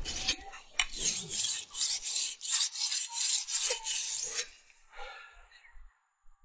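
Knife blade being sharpened on a whetstone: steel rasping back and forth on stone in quick regular strokes, about three a second, stopping about four and a half seconds in.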